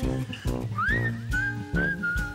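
Background music: a whistled melody that slides up and settles into held notes, over a plucked guitar accompaniment with a steady beat.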